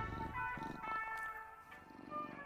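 Quiet music with soft held notes, over a sleeping cartoon cat purring softly.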